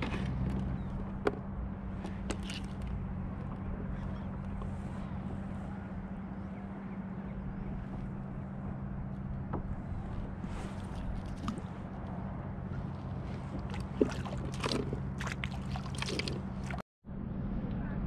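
Water lapping and sloshing against a plastic kayak hull, with scattered light knocks and clicks from fishing gear being handled, over a steady low hum. The sound cuts out completely for a moment near the end.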